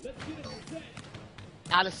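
Beach volleyball being struck by players' hands and forearms during a rally: a few short, sharp contacts over faint background voices. A man's commentary voice starts near the end and is the loudest sound.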